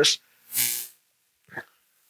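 A short breath into the microphone about half a second in, then a brief faint mouth sound.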